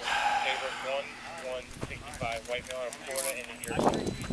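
Indistinct voices talking in the background, with a short burst of noise at the start and a rustling noise near the end.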